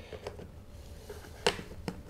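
Two short, sharp plastic clicks about a second and a half in, a few tenths of a second apart. They come from the bumper bar being fitted into its mounts on the frame of a folded Espiro Fuel compact stroller.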